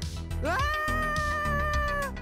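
A high-pitched, drawn-out cartoonish cry that rises at first and then holds one pitch for about a second and a half, over background music.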